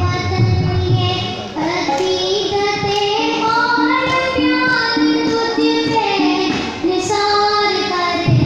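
A boy singing a melody into a handheld microphone, holding long notes that rise and fall in pitch.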